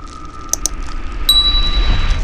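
Sound effects for a subscribe-button animation: two quick mouse clicks about half a second in, then a bright bell-like ding about 1.3 s in that rings on. Under them a low rumble swells and a steady tone is held.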